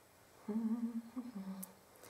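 A woman humming a few notes to herself, starting about half a second in and ending with a step down to a lower note.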